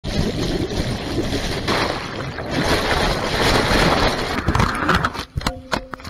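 Heavy underwater rushing and rumbling of turbulent river water, picked up by a camera lowered into the fast-flowing channel. It cuts off sharply about five seconds in as the camera leaves the water, followed by a few sharp knocks.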